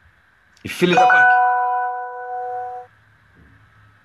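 An electronic chime: a sharp onset followed by a single held pitched tone of about two seconds that cuts off abruptly.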